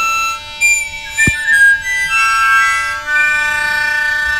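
A harmonica sounded by air from a balloon, a makeshift bagpipe: a steady drone held under a slow tune of sustained notes that change every second or so, sounding like a bagpipe. A brief click about a second in.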